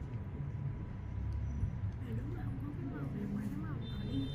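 A steady low rumble of background noise, with faint voices talking quietly in the second half.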